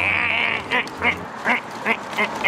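Backpack zipper pulled open in one rasping stroke lasting about half a second, followed by several short rasps as the bag is opened further and its contents are pulled out.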